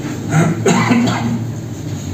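A person coughing and clearing their throat, about half a second in.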